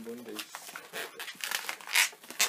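Inflated latex modelling balloons rubbing and twisting against each other and the hands, a run of short scratchy strokes with the loudest right at the end.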